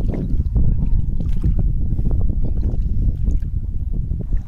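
Wind buffeting the microphone as a loud, uneven low rumble, with faint wet squelches of hands digging in soft tidal mud.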